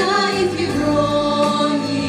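Female vocal ensemble singing long held notes in harmony with musical accompaniment.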